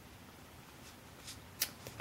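Faint handling noise: a few light clicks and rustles of fingers moving a small object. The sharpest comes about one and a half seconds in, after a mostly quiet first half.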